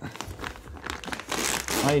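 Thin plastic protective sleeve crinkling as it is pulled off a ball screw and ball nut, irregular at first and louder from just past the middle.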